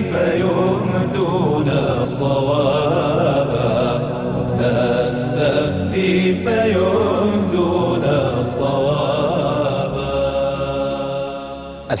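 Title theme music of layered chanting voices over steady low held tones. It fades out over the last two seconds.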